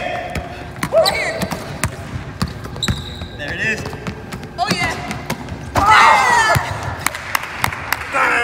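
Basketballs being dribbled on a hardwood court in a large, empty arena: repeated, irregular bouncing thuds. Voices call out in between, loudest about six seconds in.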